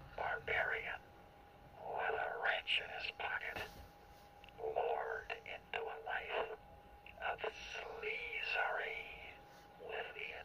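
A thin, muffled voice in short phrases with pauses between, squeezed into a narrow middle band so that it sounds almost whispered. It is the vocal of the song being played back, heavily filtered, with a faint steady tone underneath.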